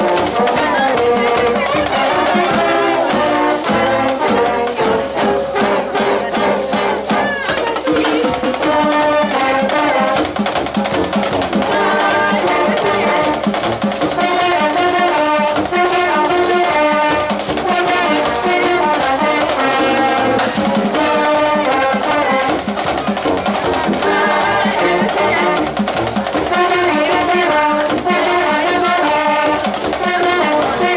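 A live brass band playing an upbeat tune, with trumpets, trombones, a sousaphone and a euphonium sounding together in a steady, unbroken run of notes.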